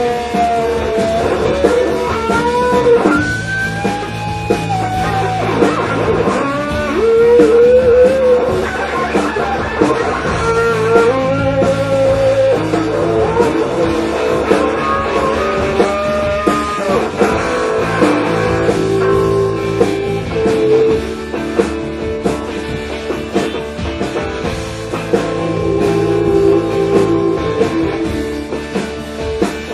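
Live indie rock band playing: electric guitars over bass and drums, with a melody line that bends up and down in pitch.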